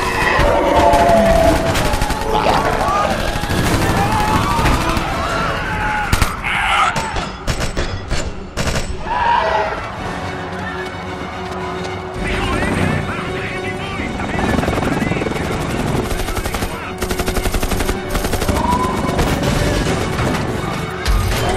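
Action-film soundtrack: bursts of automatic rifle fire, with the heaviest volleys around the middle and again near the end, over people screaming and shouting and a tense orchestral music bed.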